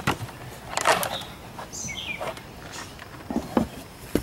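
Scattered light knocks and rattles of a handheld spotlight and its coiled cord being handled against an aluminium boat, with a short bird chirp about two seconds in.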